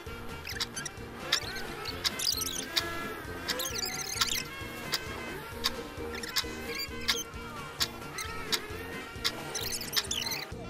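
Playful background music with a steady beat, about one tick every 0.7 seconds, and short squeaky chirps that rise and fall in pitch.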